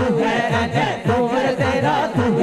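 Naat recitation: a male solo voice sings an Urdu devotional poem over a chorus of men chanting a short repeated vocal pattern, about three beats a second.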